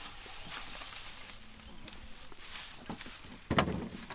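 Dry hay rustling and crackling as it is pulled and pushed by hand in a plastic milk crate, with scattered small snaps and one louder thump about three and a half seconds in.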